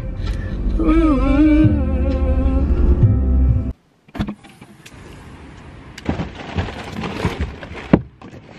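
A song with singing plays over the low rumble of a moving car, cutting off suddenly about four seconds in. Then a click, followed by the rustle and knocks of cardboard snack boxes being handled and lifted out of a car's trunk.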